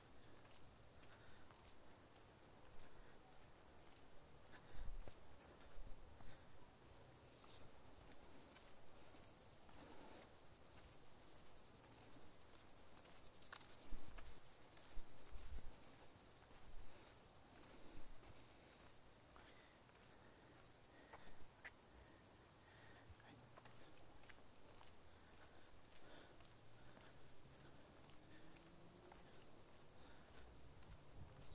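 Insects in the scrub making a steady, continuous high-pitched buzz that swells louder in the middle and then eases off.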